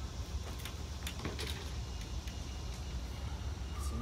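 Short plastic-and-metal clicks and rattles from a push mower's grass catcher bag being handled and unhooked, about half a second in and again around one and a half seconds in, over a steady low rumble.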